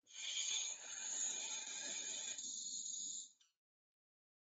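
A recorded bellbird call played from a phone's speaker into a video-call microphone. It comes through as a harsh hiss that loses its lower part about two and a half seconds in and cuts off after about three and a half seconds.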